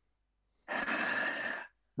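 A man's audible breath through an open mouth, lasting about a second and starting a little under a second in.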